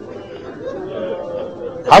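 A pause in a man's sermon filled by faint background voices; his speech starts again loudly just before the end.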